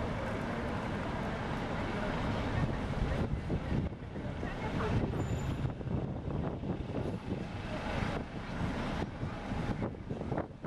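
Street ambience of passing car traffic, a continuous uneven low rumble, with wind buffeting the microphone.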